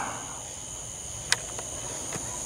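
Steady high-pitched chorus of crickets, with one sharp click a little past halfway.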